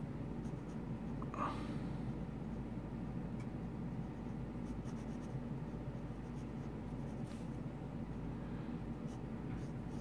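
Pencil drawing on paper: light, scattered sketching strokes scratching across the page over a steady low room hum.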